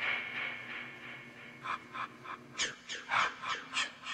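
Bacon sizzling in a frying pan, a steady hiss that fades over the first second or so. Then a person's breathy laughter sets in, quick short bursts at about six a second.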